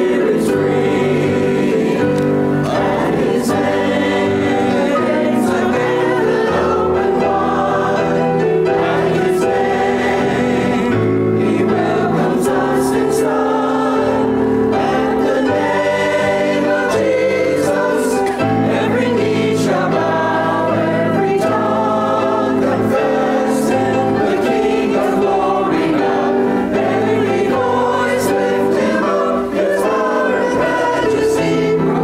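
Mixed church choir of men's and women's voices singing an anthem, with sustained low notes held beneath the voices.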